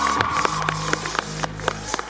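Cheer routine music with a low steady bass line and sharp percussive hits.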